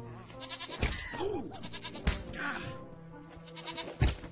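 Animated-cartoon soundtrack: music under bleat-like cartoon creature vocal sounds with sliding pitch, and sharp hits about a second and two seconds in, with a louder hit at the very end.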